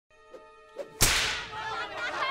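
A single sharp whip crack about a second in, ringing out and fading, over a faint steady tone.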